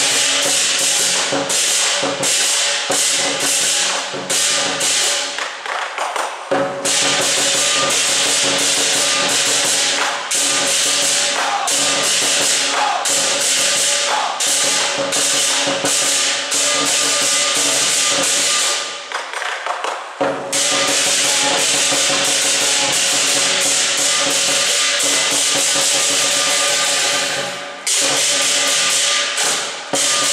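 Lion dance percussion: a large lion drum and clashing hand cymbals play a loud, driving rhythm with ringing metal. The playing breaks off briefly about six seconds in, again for about a second around twenty seconds, and once more near the end.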